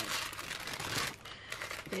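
Tissue paper rustling and crinkling as a hand folds it back inside a cardboard box, busiest in the first second and then quieter.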